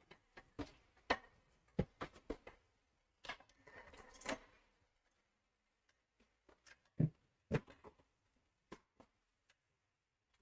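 Scattered light clicks and knocks of bike parts and tools being handled, with about a second of rustling a little past three seconds in and two louder knocks about seven seconds in.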